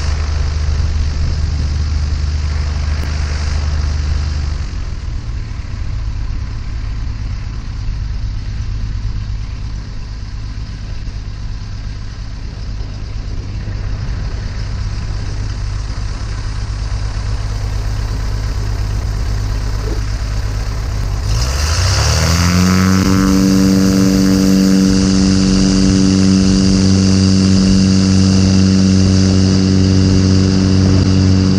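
Light aircraft's piston engine and propeller (Inpaer Conquest 180) running at low taxi power, its note dropping slightly about four seconds in. About 21 seconds in, the throttle is opened and the engine note rises quickly to a steady, louder full-power drone for the takeoff roll.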